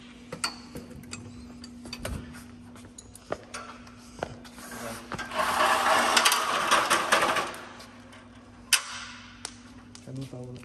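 Metal hand-tool clicks and taps as a wrench works the nuts on a gyroplane's rotor-mast fittings. About five seconds in there is a louder two-second burst of rapid clicking and rattling, then one more sharp click near the end.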